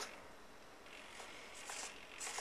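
Small RC servos working the model airplane's elevator in a low-rates check, giving a few short, faint whirs in the second half.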